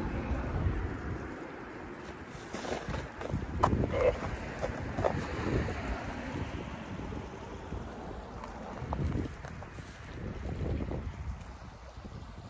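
Wind buffeting the microphone in gusts over the steady rush of a partly frozen, slush-covered river, with a few knocks from the phone being handled.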